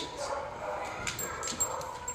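A dog whining softly with a thin, steady tone, impatient for the bowl of food held in front of it.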